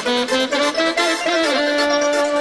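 Instrumental intro of a Romanian manele song: a lead melody over a steady beat, before the singing comes in.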